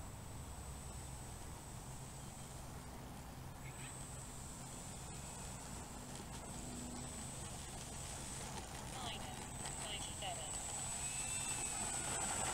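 Brushless electric motor of an FMS 1100 mm P-51 Mustang RC plane taxiing over grass at low throttle: a faint, steady high whine over a low rumble, growing louder toward the end as the plane comes closer.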